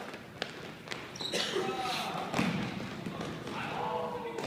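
A basketball game on a hardwood gym floor: a few sharp ball bounces and footfalls as play moves up the court, with players' voices calling out in the middle of it.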